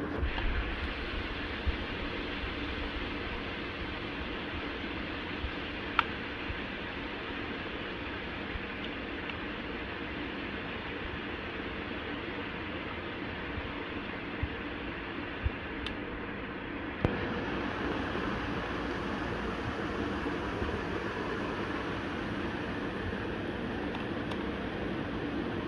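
Steady hissing background noise with a few short, sharp clicks of a small screwdriver and wire ends being worked into a plastic screw-terminal block. The hiss steps up slightly about two-thirds of the way through.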